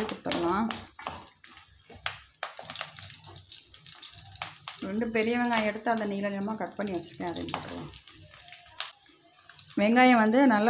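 A voice speaking in two stretches, at the start and again from about halfway. Between them come sharp clicks and scrapes of a wooden spatula in a non-stick pan over a faint hiss of frying oil.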